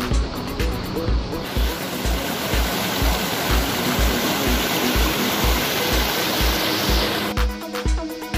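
Electronic dance music with a steady kick drum about twice a second. From about a second and a half in until near the end, the loud rush of white water tumbling over boulders in a small rocky cascade joins the music, then cuts off abruptly.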